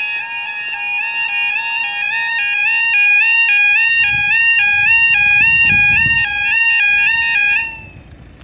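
Level-crossing yodel alarm warbling between two pitches, about two alternations a second, then cutting off suddenly near the end. A low rumble sits under it in the second half.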